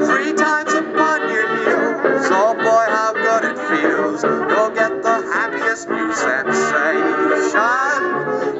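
A man singing a 1930s-style dance song through a megaphone held up to a microphone, over band accompaniment.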